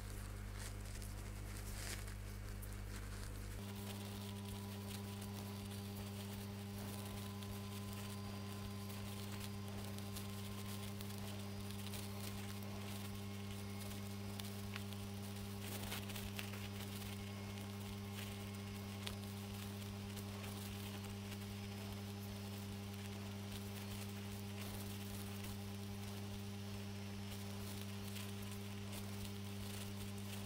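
Steady low electrical mains hum, changing slightly in tone about three and a half seconds in. Faint soft ticks from the crochet hook and cotton thread are scattered over it.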